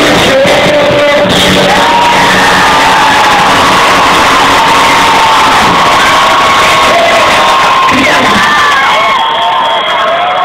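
A rock band playing live, with a large crowd singing along and cheering close to the microphone. The band's sound thins out near the end as the cheering carries on.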